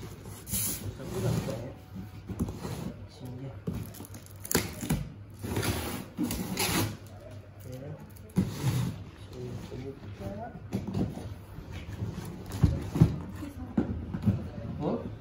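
Cardboard box being opened by hand: packing tape cut and ripped, and cardboard scraping and rustling in irregular bursts. A few knocks on the box follow, the loudest two close together near the end.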